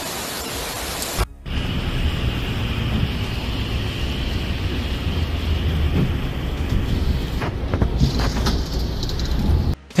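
Heavy rain and rushing floodwater: a steady hiss that breaks off briefly a little over a second in, then returns with a deep rumble under it.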